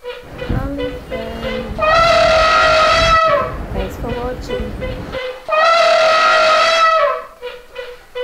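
Two long, loud horn-like blasts, each held steady for about a second and a half, with shorter tones before and between them and a low rumble underneath for the first five seconds.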